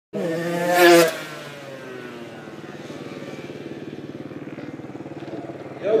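Motorcycle engine revving hard, peaking just before a second in, then running on at a steadier, lower level with an even pulsing beat.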